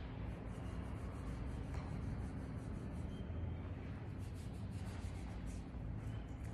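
Steady low hum of the gym with faint rubbing and a few light clicks of handling.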